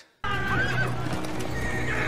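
Film soundtrack of horses neighing and hooves clattering, with men shouting over a low music score. It cuts in abruptly just after a moment of silence.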